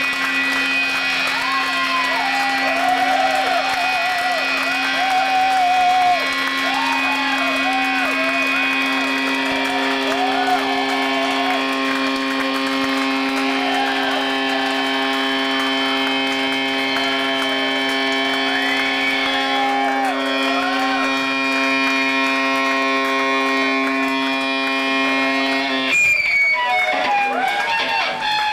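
Amplified drone of several steady held tones with a warbling, swooping pitch line wandering over it. It sounds like electric guitar feedback and effects noise from the stage amplifiers.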